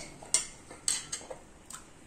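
Several sharp metallic clinks of stainless steel kitchenware being handled: a steel plate and utensils knocking together. Two are distinct, about half a second apart, followed by fainter taps.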